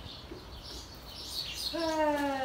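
Faint, high chirps of small birds. Near the end a person's voice starts a long, slowly falling call.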